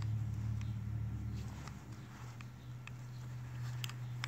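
Faint handling noise from a Beretta 9000S polymer-frame pistol being turned over in a hand: a few light, scattered clicks and taps over a steady low hum.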